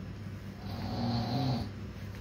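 A brief, faint hummed vocal sound, like a closed-mouth 'mm', lasting about a second, over a steady low room hum.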